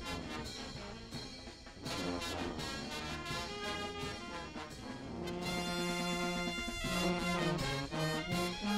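Brass band playing festival music, with a long held chord a little past the middle.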